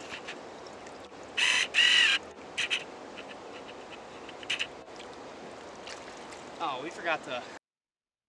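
Steady hiss of flowing river water, with a few short, loud calls about a second and a half in and again near the end. The sound cuts off abruptly just before the end.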